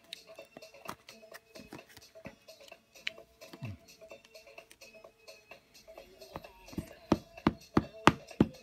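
Faint background music with scattered light clicks of plastic being handled; from about seven seconds in, quick sharp taps, about three a second, as a StazOn ink pad is dabbed onto a clear silicone stamp mounted on an acrylic block.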